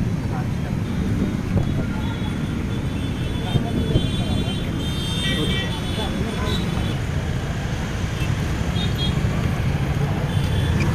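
Steady rumble of road traffic with indistinct voices of people talking.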